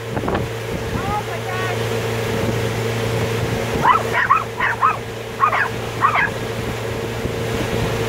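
A small dog barking in short runs of high yips, in three clusters about a second in, around four seconds in and near six seconds, over the steady hum of a boat's outboard motor.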